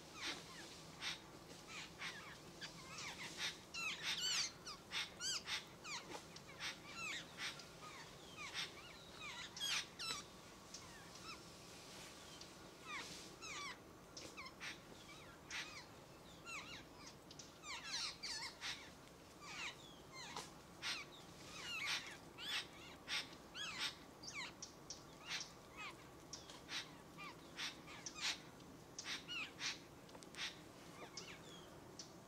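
Birds calling: a busy, irregular run of many short calls, several a second, with louder clusters around 4, 10 and 18 to 22 seconds in.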